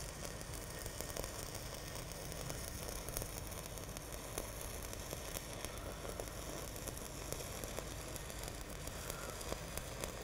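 Stick-welding arc burning steadily as the electrode runs a cap bead across the top of a steel pipe: an even hiss with scattered crackles.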